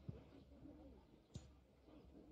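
Near silence: faint open-air ambience on a football broadcast feed, with one soft click about one and a half seconds in.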